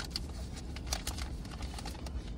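A few light clicks and rustles of a plastic food container and paper wrappers handled with a fork, over a low steady hum inside a car cabin.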